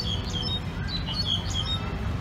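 Small birds chirping: a quick run of short, high chirps and whistled glides, over a steady low rumble of background noise.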